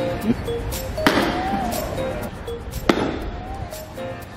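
Background music with a melody, over which a golf iron strikes a ball twice: a sharp click about a second in and another near three seconds.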